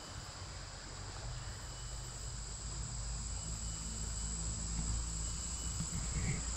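A steady, high-pitched insect chorus whining without a break, with a low rumble underneath.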